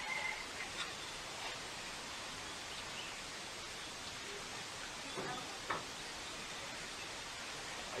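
Quiet, steady hiss of background noise, with faint distant voices briefly at the start and about five seconds in, and a single short click just before six seconds.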